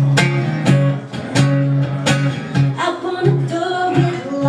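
A woman singing a folk-pop song over a strummed acoustic guitar, the strums falling in a steady rhythm.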